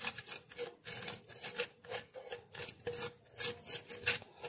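Fingers rubbing and pressing butter paper against the inside of an oiled stainless steel pot: irregular short scratchy rustles, several a second.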